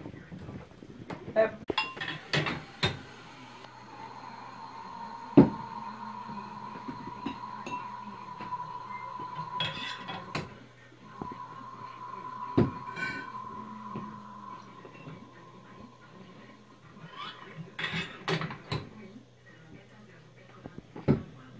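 Glass bottles clinking and knocking as they are handled during bottling, a scatter of sharp clinks. A steady high whine and a low hum run underneath through most of it.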